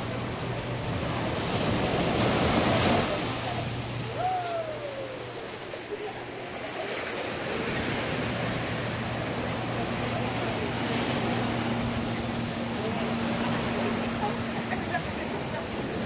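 Small ocean waves breaking and washing up a sandy beach, swelling louder about two to three seconds in, with people's voices in the background.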